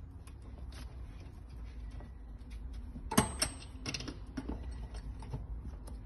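Small metallic clicks and clinks from hand-fitting bolts into a steel swivel seat base plate. The loudest is a sharp clink that rings briefly about three seconds in, followed by a cluster of smaller clicks.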